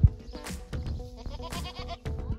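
Goats bleating over background music, with a short low thump at the very start.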